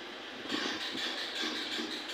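Kia Carnival idling after a restart, heard from the driver's seat as a steady hiss-like hum.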